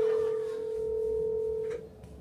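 A steady single-pitch telephone tone from a desk phone's handset, cutting off sharply near the end, followed by a faint click.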